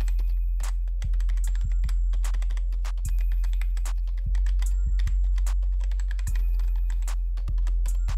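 Computer keyboard typing in quick, irregular clicks over background music with a steady low bass.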